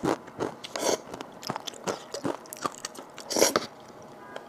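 Close-up wet mouth sounds of a person eating saucy instant noodles: chewing and short slurps in an irregular run, with a longer, louder slurp about three and a half seconds in.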